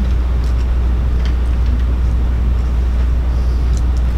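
Steady low hum on the meeting's microphone feed, with a few faint clicks over it.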